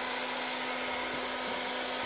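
Electric heat gun running steadily, its fan blowing with a faint low hum underneath. It is being used to heat the club head and soften the epoxy holding the glued-in shaft in the hosel.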